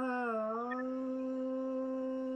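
A man's voice holding one long sung note, dipping slightly in pitch at first and then held steady to close a line of the Tamil film song being sung.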